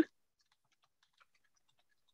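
Near silence on a video call, with a few faint, scattered small clicks.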